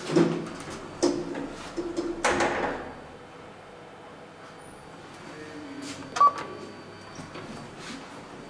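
KONE elevator car settling at a floor with a couple of clunks, then its automatic doors sliding open about two seconds in. Several seconds later comes a single short beep.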